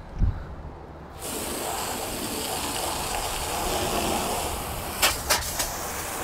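Garden hose spray nozzle turned on about a second in, water spraying steadily onto a rubber floor to rinse off cleaner. A low thump comes just before the spray starts, and a few sharp clicks come near the end.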